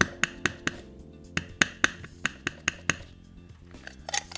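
Plastic-cased ink pad dabbed repeatedly onto a clear stamp on an acrylic block: a quick series of light taps in irregular groups of three or four, over soft background music.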